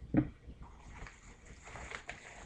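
A brief low sound near the start, then faint rustling and handling noise as new RipStik caster-board wheels and their packaging are handled.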